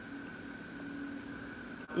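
Room tone: a steady electrical-sounding hum, with a low tone and a higher whine, over a soft even hiss. It briefly drops out just before the end.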